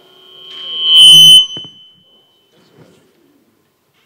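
Sound-system microphone feedback: a high-pitched squeal that swells over about a second to very loud, then cuts off suddenly, followed by a sharp click.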